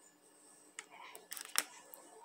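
Faint handling noise from a phone being moved: a few quick clicks and rustles about a second in, the loudest about a second and a half in.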